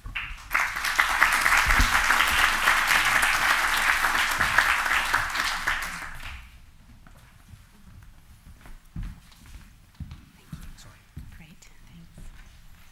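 Audience applauding at the end of a talk, loud and even for about six seconds, then dying away into quiet room noise with a few faint thumps.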